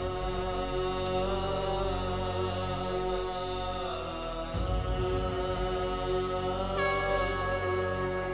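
Dramatic background score of held droning tones over a deep low pulse, with a higher tone coming in near the end.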